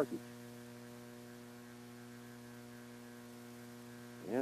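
Steady electrical mains hum, a low buzz with a stack of even overtones holding at one level throughout.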